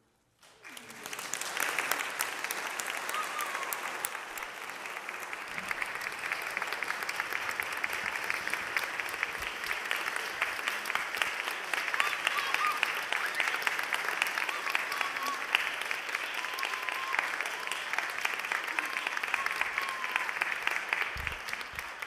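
Audience applauding: the clapping breaks out about half a second in, after a brief silence, and keeps going evenly.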